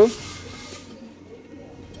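A man's voice finishing a word, followed by a quiet stretch of faint, even background noise with no distinct sound in it.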